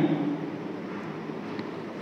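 Steady low hiss of room noise, with the end of a spoken word fading out at the start.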